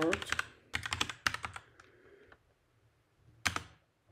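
Keystrokes on a computer keyboard as a password is typed: a quick run of key presses over the first two seconds or so, then a pause and one louder single stroke near the end.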